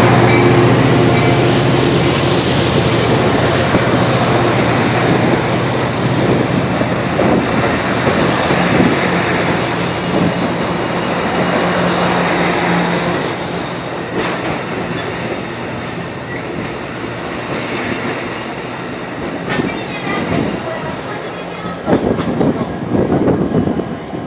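Passenger train departing: a diesel locomotive's steady engine tone fades in the first few seconds, and the bi-level cars roll past with wheels clicking on the rails. The rolling sound slowly dies away, and a few rough bumps come near the end.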